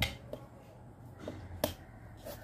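A few sharp clicks and knocks of objects being handled by hand. The loudest comes at the very start, another sharp one about one and a half seconds in, and there are fainter taps between them.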